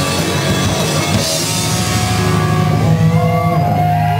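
Live rock band playing loud, with drums and electric guitar. About a second and a half in, the drumming drops away and a low chord rings on, with gliding high tones over it toward the end.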